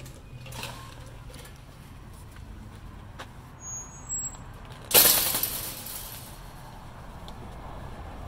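Low street traffic hum. About five seconds in comes a sudden loud hiss that dies away over a second and a half: a truck's air brakes releasing.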